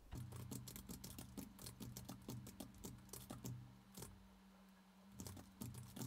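Quiet typing on a computer keyboard: quick runs of keystrokes for about four seconds, then a pause and a few more keystrokes near the end.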